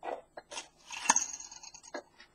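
Handling noise of small plastic and wire parts being picked up and moved on a desk: scattered light clicks and rustles, with one sharper click about a second in followed by a brief rustle.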